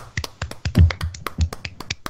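A few people clapping, a short, uneven round of applause of sharp individual claps close to the microphones, some with a low thump.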